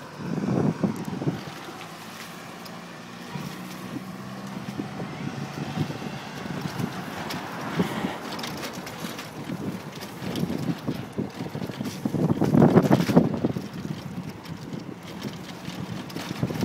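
Wind buffeting a moving microphone: a steady rushing noise, with louder low rumbling gusts about a second in and again a few seconds before the end.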